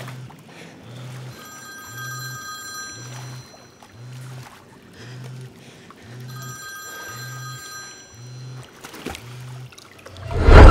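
A phone ringing twice, each ring a long electronic tone lasting about a second and a half, the second starting about five seconds after the first. Under it runs a low, even pulse repeating about one and a half times a second.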